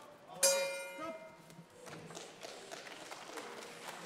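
Boxing ring bell struck once about half a second in, ringing out and fading over about a second: the bell ending the round.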